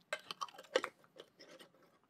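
Soft, irregular mouth clicks and lip smacks of someone tasting honey off a fingertip.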